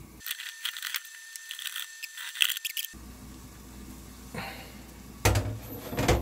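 Oil-soaked paper towel scratching and crinkling as a new stainless steel frying pan is wiped of its black polishing-compound residue: a run of short scrapes for about three seconds, then a louder knock near the end.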